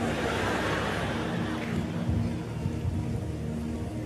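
Soft background music: sustained held chords over a low bass, with a faint noise that fades away over the first couple of seconds.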